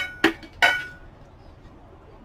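China pieces clinking as they are set down and knocked together: three sharp clinks within the first second, each with a short bright ring.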